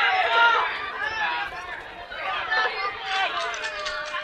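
Voices of a street crowd chattering and calling out, several overlapping with no single clear line of dialogue.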